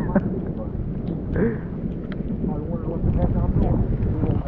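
Wind buffeting the microphone in a steady low rumble, with voices talking over it.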